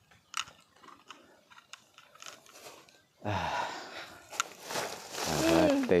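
Black plastic bag rustling and crinkling, starting about three seconds in after a few faint clicks, with a brief breathy vocal sound near the end.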